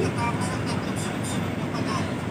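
Steady running noise of a city bus heard from inside the passenger cabin.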